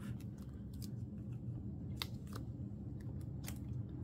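Light plastic clicks and ticks from photocards and clear plastic binder sleeves being handled, a few scattered sharp ticks over a faint low hum.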